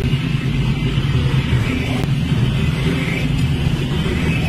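Zero-turn riding mower's engine running steadily under load while its deck cuts tall, overgrown grass.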